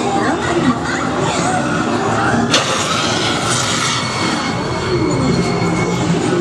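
Loud haunted-maze sound effects: a dense rumbling din with voices in it, and a sudden crash about two and a half seconds in, followed by a held high tone.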